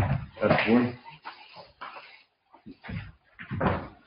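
Knocks and bumps around a wooden pulpit as a man steps away from it, beginning with a sudden knock. A short stretch of voice comes about half a second in.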